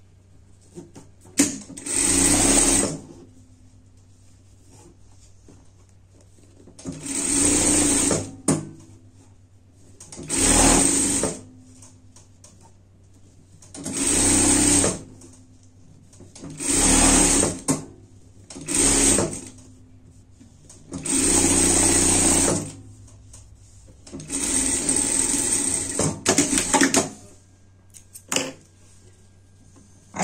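Industrial sewing machine stitching a long seam down a strip of fabric in short runs. It starts and stops about eight times, each run lasting one to two seconds, with pauses between them while the fabric is repositioned.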